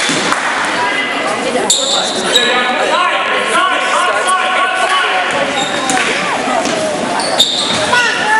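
Girls' basketball game in a gymnasium: the ball bouncing on the hardwood floor and sneakers squeaking, under overlapping shouts from players and spectators. The shouting is busiest in the middle, and there is a sharp knock near the end.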